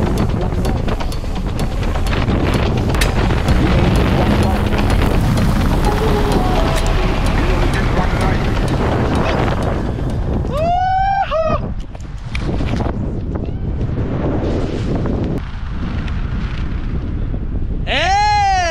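Wind rushing over the helmet camera's microphone during a parachute canopy descent. About ten seconds in, a high, wavering whoop is heard, and another starts right at the end.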